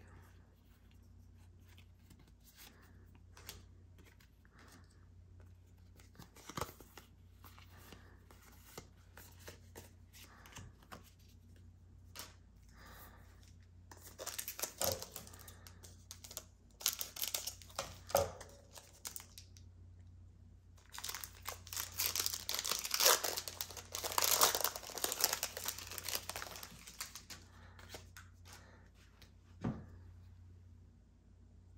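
Foil wrapper of a Pokémon TCG booster pack crinkling and being torn open, in crackling bursts through the second half. Before that there are only faint ticks of cards being handled.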